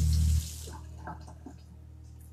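A steady hiss with a low hum, like running water, that cuts off sharply about half a second in. After that only a faint hum remains, with a few soft clicks.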